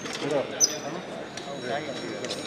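People's voices talking in the background, with a couple of short high-pitched rings, one right at the start and one about half a second in.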